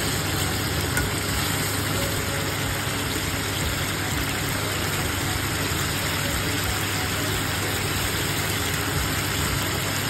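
Onion-tomato masala sizzling and bubbling in oil in a karahi, a steady hiss over a constant low hum.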